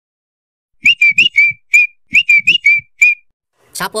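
A short whistled tune: two matching phrases, each of four quick notes followed by a single held note, with soft low thumps under the notes.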